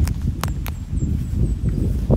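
Footsteps through grass as the person holding the phone walks backward, over a steady low rumble on the microphone, with two sharp clicks about half a second in.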